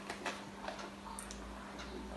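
Quiet room tone with a steady low electrical hum and a few faint, irregular ticks.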